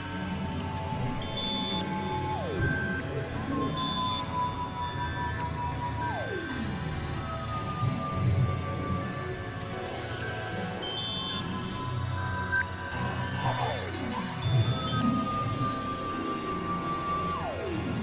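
Experimental electronic drone music. Held high synth tones sag slowly and then drop away in fast downward swoops about four times, over a dense low rumbling drone dotted with short high beeps.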